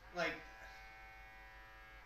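A young man's voice saying "Like," then trailing into a long, steady, buzzy hum held on one pitch.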